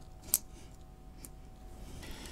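Small flush cutters snipping once, a sharp click about a third of a second in, with a fainter click a second later, during a modification to a small amplifier board's metal shield.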